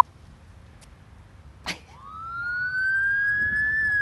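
A short beep at the very start, then an emergency-vehicle siren sounding a single wail from about two seconds in. Its pitch rises slowly, then begins to fall near the end. There is a click a little before the siren starts.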